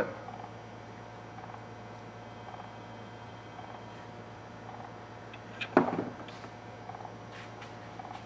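Faint steady electrical hum from the radio-telemetry receiver setup, with a faint short beep about once a second, the pulses of a detected radio tag. About six seconds in, a single handling knock.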